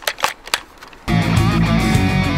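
A few sharp clicks of airsoft shooting in a gap in the music; about a second in, rock music with electric guitar comes back in loudly.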